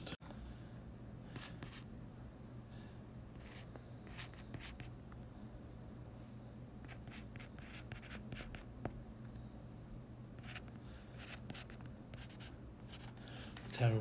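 Faint scratching of handwriting, in short strokes that come and go, over a steady low hum.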